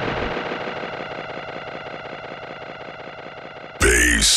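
The closing tail of an electronic bass-music DJ mix fading out: an echoing, ringing decay that dies away steadily. Just before the end a loud voice cuts in suddenly.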